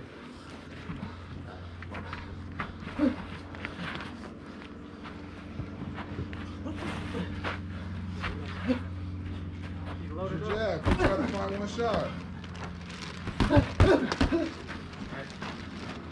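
Shouting voices around a boxing bout, loudest about two-thirds of the way in and again near the end. Scattered light thuds and scuffs of gloves and footwork run under them, over a steady low hum.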